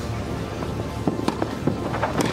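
Tennis racquets striking the ball in a fast rally, several sharp pops in the second half, over steady background music.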